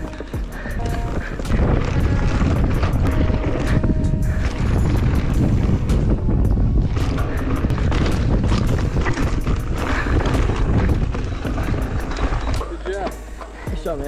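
Background music over the sound of a 2016 Giant Reign mountain bike descending a dirt trail: the bike's frame and chain rattle, with dense sharp clicks and knocks from the trail, and wind rumbling on the camera microphone. The riding noise eases off in the last second or two.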